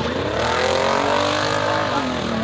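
Enduro race car engine passing close on a dirt oval, its pitch rising over the first half-second, holding, then dipping slightly near the end as it goes by, over the running engines of the rest of the field.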